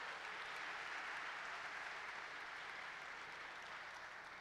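Audience applauding, a steady, fairly faint patter of clapping that tapers off near the end.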